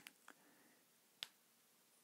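Near silence with a few faint, brief clicks, the sharpest about a second and a quarter in.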